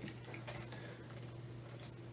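Ceiling fan running in a quiet room: a steady low hum with a few faint ticks.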